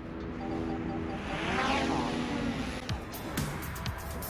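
A car passing by: the sound swells to its loudest about two seconds in and then fades, over a steady low hum.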